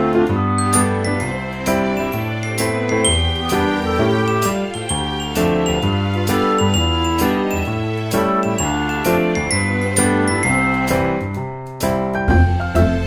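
Background music: a light tune of bell-like chiming notes over a stepping bass line.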